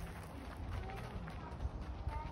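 Faint, indistinct voices with short snatches of talk, over a steady low rumble.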